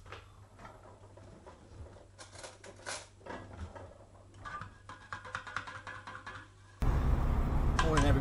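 Light clinks and taps of a teaspoon and a stainless steel travel mug as a hot drink is made, a scattered run of small clicks. About seven seconds in it cuts suddenly to the much louder, steady noise of a car's interior on the move.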